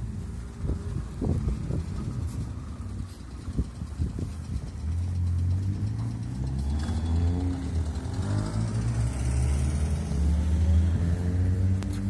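A car's engine passing close by, its low note rising in pitch as it accelerates through the intersection from about five seconds in. Uneven street rumble with a few knocks comes before it.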